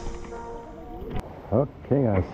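Water from an outdoor shower running over a man's head, a faint steady hiss, as the music before it fades out. A sharp click a little after a second in, then short bursts of his voice near the end.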